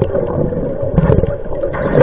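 Scuba diver's regulator breathing and exhaled bubbles, heard underwater through a camera housing: a muffled, rumbling gurgle that swells about a second in and again near the end.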